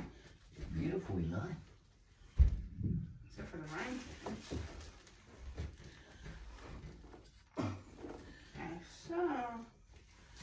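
Indistinct low talk in a small room, with one sharp knock about two and a half seconds in, the loudest sound here.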